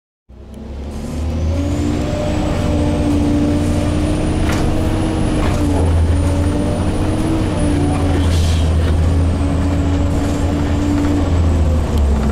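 Gillig transit bus running along the road, heard from inside near the driver's seat: a steady low engine drone with a thin high whine that climbs over the first few seconds and then holds, and a few short rattles.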